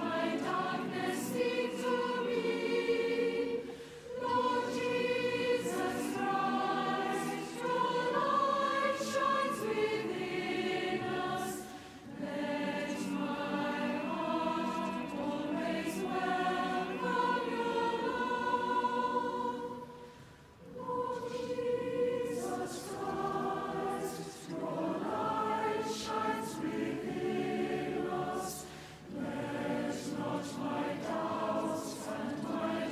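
A choir singing sacred music in sustained phrases of a few seconds each, with short breaks for breath between them. The longest break falls about two-thirds of the way through.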